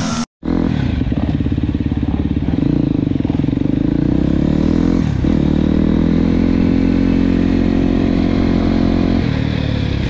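Enduro dirt bike engine running under way at a steady note as the bike rides along a wet trail, with a short dip in pitch about halfway and a change near the end. The sound drops out completely for a moment just after the start.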